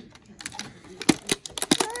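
Handling of a cardboard advent calendar box and its plastic tray: several sharp clicks and taps, the loudest in the second half, as the toy is worked out of its compartment.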